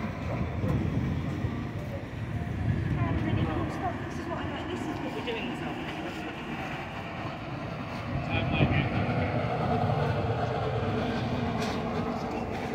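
Street ambience at a busy city intersection: steady traffic rumble with passersby talking, growing louder about eight seconds in.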